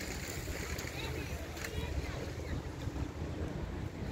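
Wind buffeting the phone's microphone in a steady low rumble, over the wash of sea water against a rocky shore.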